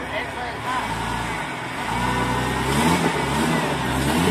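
Jeep Wrangler Rubicon's engine under load as it crawls over tree roots with a rear tyre hung up, rising in pitch about three seconds in.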